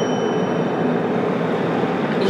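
Steady road and engine noise inside a car cabin at expressway speed, with a faint high chime tone dying away in the first half.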